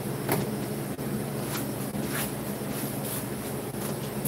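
A steady low mechanical hum, with a few light clicks as a projector is handled.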